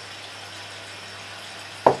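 Steady, even background hiss with a faint low hum underneath, unchanging throughout.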